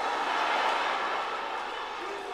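Live comedy audience laughing and applauding together as an even wash of crowd noise, swelling just after the start and slowly easing off.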